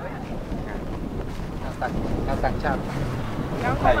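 Wind buffeting the microphone outdoors: a steady low rumble, with faint voices in the background and speech starting again near the end.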